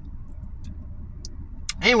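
Steady low rumble of a car cabin, with a few faint light clicks of a plastic spoon against a plastic soup container. A woman's voice starts near the end.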